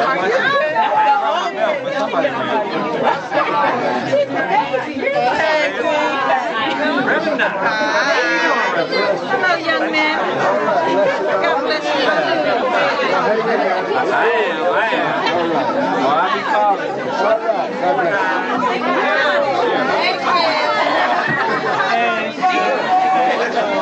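Several people talking at once: steady overlapping chatter of voices, none of it clear as single words.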